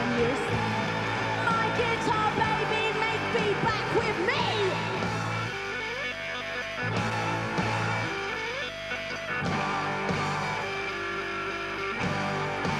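Live rock band playing an instrumental passage: electric guitars over bass and drums, with a note sliding upward about four seconds in.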